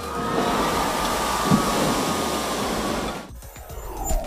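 Water spray rushing and falling back after the 18,000-pound Orion spacecraft test article splashes into a hydro impact basin: a steady rush of noise that dies away about three seconds in.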